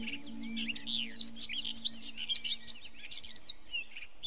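A chorus of many songbirds chirping and singing, with overlapping quick rising and falling calls. A low held musical tone fades out under them about halfway through.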